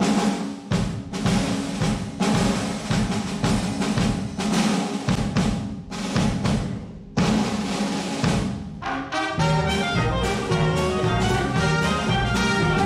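Drum kit playing alone in a traditional jazz band, a busy run of strokes and rolls. About nine seconds in, the horn section comes in with the tune over the drums.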